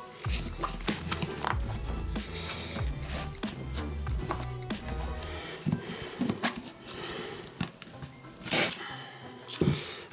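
Background music with a steady bass line that fades out about halfway, over rustling and clicking as cotton canvas is folded and handled on a wooden stretcher frame; a brief sharp snap about eight and a half seconds in.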